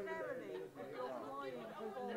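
Chatter: several people talking at once, their voices overlapping in a large hall.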